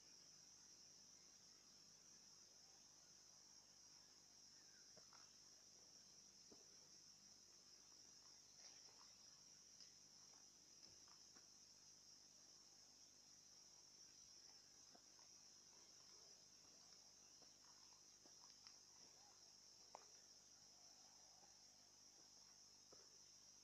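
Faint, steady high-pitched insect chirring, with a few soft rustles and clicks scattered through it.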